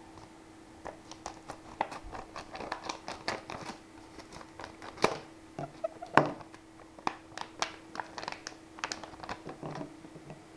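Stiff plastic blister pack crackling and clicking as it is handled and cut open with scissors, with two sharper snaps about five and six seconds in.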